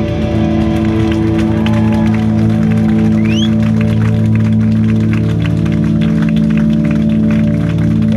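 Amplified electric guitars ring out on a sustained chord as a rock song ends, while the crowd claps. A brief rising whistle comes about three seconds in.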